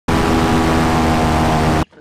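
Airboat engine and large rear propeller running at speed, loud and steady with a constant pitched hum, cutting off suddenly near the end.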